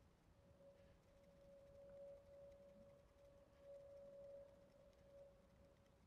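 Near silence, with a faint steady mid-pitched tone that swells and fades.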